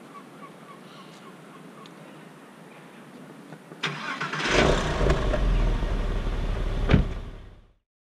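1998 Porsche 911 Carrera (996) flat-six cranked by the starter and catching about four seconds in, then running loudly before fading out near the end. Faint, even ticking comes before the start, and a sharp click sounds just before the fade.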